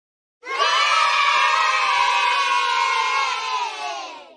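A crowd of voices shouting and cheering together, starting about half a second in, holding steady, then fading out near the end.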